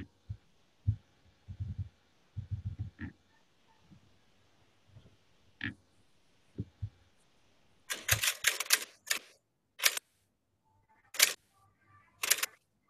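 Irregular clicks and soft low thumps from a computer's mouse and keyboard picked up by a desk microphone. A quick run of clicks comes about eight seconds in, with single sharper clicks near ten and eleven seconds.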